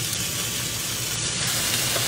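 Raw bacon strips sizzling on the hot plate of an electric waffle maker, a steady hiss.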